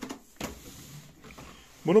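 Cardboard carton flaps being handled and pressed by hand: a few short scrapes and taps of the card.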